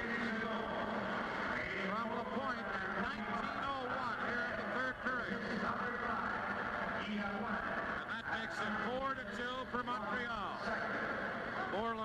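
A man's voice talking over steady crowd noise on an old television hockey broadcast.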